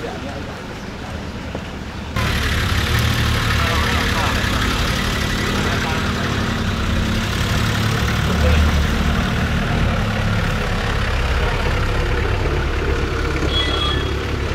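Engine of a Mitsubishi Pajero SUV running at low speed as it rolls slowly past close by, a steady low hum that grows louder after a cut about two seconds in, with people's voices around it.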